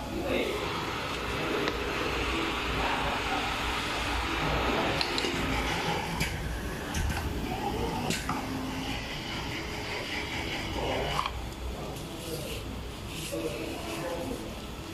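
Tabletop pneumatic screen printing machine running a print cycle: the screen frame lowers, the squeegee sweeps across and the frame lifts again. There is a steady hissing mechanical noise with several sharp clicks.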